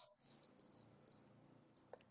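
Near silence: faint room tone over a video call, with a few faint, very high-pitched chirps scattered through it.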